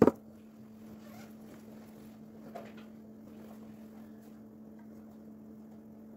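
Quiet room tone with a steady low electrical hum, and one sharp knock at the very start.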